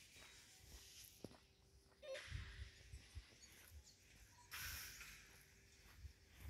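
Quiet outdoor ambience: soft low thumps of footsteps on a paved path, with a faint steady hiss that swells briefly twice, about two seconds in and again near the middle.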